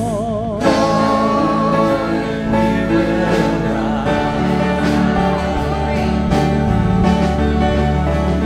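Live worship music: a group of singers holding sustained, vibrato-laden notes over acoustic guitar and band accompaniment.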